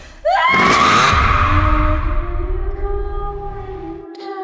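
A scream bursts out suddenly about a quarter of a second in, over a loud trailer sound hit, then gives way to a deep low rumble and held, slowly fading music tones.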